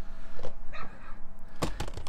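Clear plastic storage-tub lid being handled and lifted, giving a few sharp clicks and crackles: one about half a second in and a quick cluster near the end.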